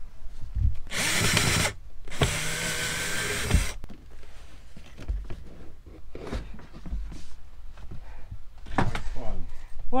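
Cordless 18 V drill/driver running in two short bursts, about a second in and again for just over a second, backing screws out of a tiled wall panel. Lighter knocks and handling noise follow as the panel is worked loose.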